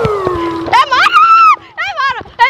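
High-pitched wailing cries: one long cry falling in pitch and settling low, then a cry that rises, holds and drops off, then short wavering calls near the end.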